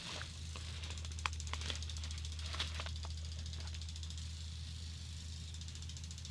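Hanging file folders and a paper journal being handled and shifted in a bag: scattered light clicks and rustling, most of them in the first few seconds, over a steady low hum.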